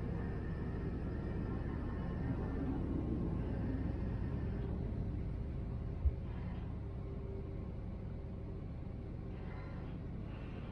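Steady low rumble of a passenger ferry under way, its engines and propeller wash, easing slightly in the second half. A single short low thump about six seconds in.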